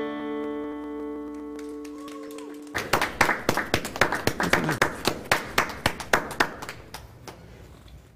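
The final chord of an acoustic guitar rings and fades away. Nearly three seconds in, clapping starts suddenly, a quick run of separate claps that slowly dies down.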